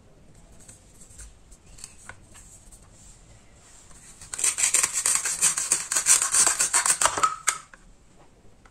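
Velcro strips tearing apart as a plastic toy knife splits a velcro play-food peach in half: a ripping crackle that starts about four seconds in and lasts about three seconds, after a few light plastic taps.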